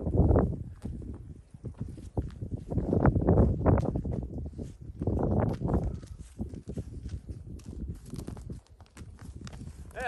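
A person's footsteps crunching through deep snow in an irregular walking rhythm, with three louder surges of low rumble over them.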